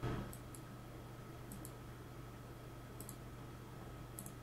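Computer mouse clicking: several sharp clicks at irregular intervals, each a quick double tick, over a faint steady hum.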